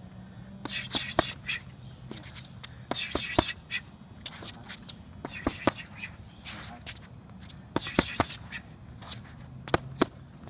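Boxing gloves striking focus mitts in groups of two or three sharp smacks, about five groups in all. Between the smacks, shoes scuff and shuffle on the hard court.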